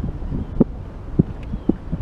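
Wind buffeting the microphone, with a few short, sharp knocks about half a second apart in the second half.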